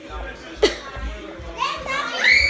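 Children's voices in play, with a high wordless vocal sound rising near the end, over the bumps and rustle of a hand-held phone being carried. A short, sharp sound with a quick fall in pitch comes about two-thirds of a second in.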